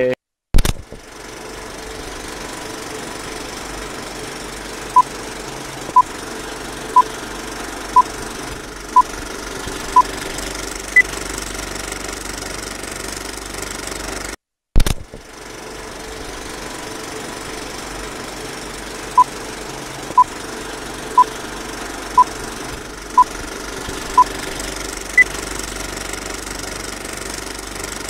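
Looping electronic sound track: a steady noise bed with six short beeps a second apart, then one higher beep. The whole pattern plays twice, and each pass opens after a brief dropout with a sharp click.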